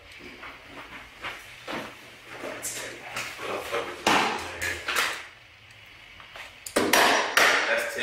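Handguns being taken from a bag and set down on a hard tabletop: a series of knocks and metallic clinks.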